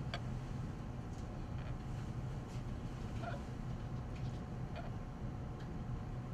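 A single sharp click as the benchtop autoclave's door is latched shut, followed by a few faint small knocks over a steady low room hum.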